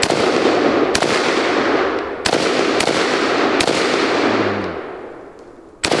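Chinese Polytech AKS-762 semi-automatic rifle, a 7.62×39 mm AK, firing five single shots at an uneven pace. Each shot has a long echoing tail, and the last comes near the end.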